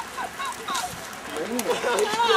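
Indistinct voices of several people calling out and shouting, overlapping near the end.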